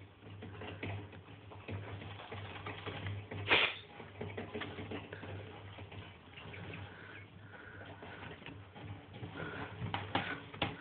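Gerbils stirring in wood-shaving bedding: soft, scattered rustles and crackles of the shavings, with one louder scrape or knock about three and a half seconds in, over a low steady hum.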